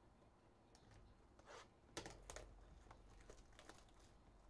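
Faint handling noise of a shrink-wrapped cardboard trading-card box being picked up: a few soft rustles and crinkles of the plastic wrap and cardboard, the sharpest about two seconds in.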